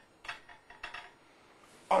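A few faint clinks and light knocks of china plates and silver cutlery being set down on a laid dining table, all within the first second or so.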